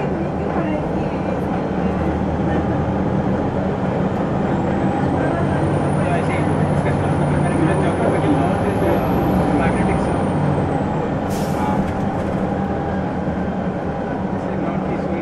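Detroit Diesel Series 50 diesel engine of a 2001 Gillig Phantom transit bus running steadily under way. A faint high whistle rises and falls through the middle, and a short hiss of air comes about eleven seconds in.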